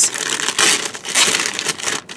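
Crinkly packaging wrap being pulled and crumpled by hand as an item is unwrapped, in a run of irregular rustling crackles.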